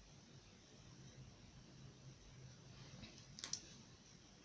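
Near silence: room tone with a faint low hum, and one small click a little before the end.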